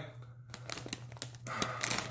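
Crinkly plastic chip bag being handled: a run of small crackles starts about half a second in and grows busier near the end.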